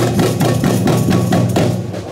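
Samba percussion group (batucada) drumming, a quick, steady beat of drums and hand percussion.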